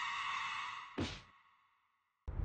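A person's high, sustained wail, cut off by a short breathy sigh about a second in, after which the sound fades away to silence.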